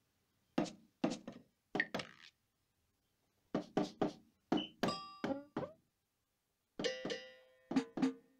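A Roland SPD-20 electronic percussion pad struck with sticks, firing sampled percussion sounds in short irregular flurries of hits with silent gaps between them. Several hits in the middle and near the end ring on with pitched tones.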